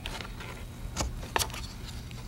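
Handling noise of a rubber band being slipped off a ruler on a tabletop: two light clicks about a second in, over a low steady hum.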